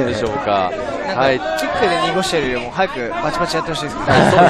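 Speech only: several voices talking over one another, the fight commentary mixed with chatter.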